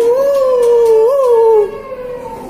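A long, loud howl holding one wavering pitch, lifting briefly about a second in and stopping shortly before the end.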